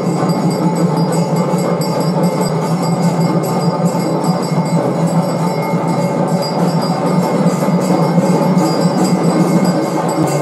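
Brass hand bell rung rapidly and continuously during aarti, within a dense, steady din of temple bells.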